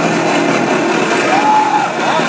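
Death metal band playing live at full volume: a dense, loud wall of distorted electric guitar, with a short bending high note about one and a half seconds in.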